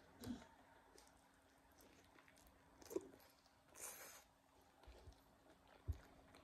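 Faint chewing and handling of food, with a few small clicks, a brief hiss about four seconds in and a low thump near the end.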